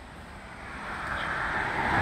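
A car approaching on the adjacent road, its tyre and engine noise growing steadily louder.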